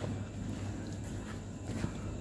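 Faint footsteps and handling noise over a steady low hum.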